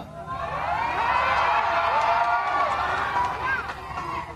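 Rally crowd cheering and shouting, many voices overlapping at once, swelling about a second in and dying down near the end.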